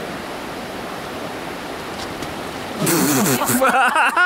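Steady rushing of a swift, strong-flowing river. About three seconds in, a man's laughter breaks in over it.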